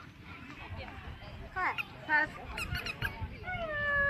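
Unworded voices of people at the ringside: short calls about halfway through, then one long held call near the end, over a low background murmur.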